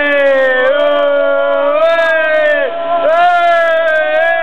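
Men's voices singing along loudly in long drawn-out wailing notes that glide slightly in pitch, with a short break near the end.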